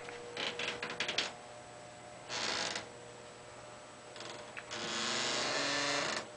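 Faint mechanical clicking and rattling in a quick run, then a short rustle, then a longer low creak with a hiss from just before the five-second mark.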